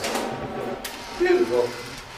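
Indistinct voices talking in a room, with faint music underneath and a couple of sharp clicks.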